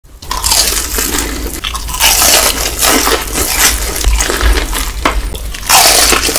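Close-up crunching of BBQ Golden Olive fried chicken, the crispy breaded coating cracking in a run of loud bites and chews.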